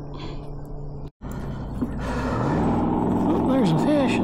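Baitcasting reel being cranked to bring in a hooked fish: a steady whir that grows louder through the second half. The sound cuts out briefly about a second in.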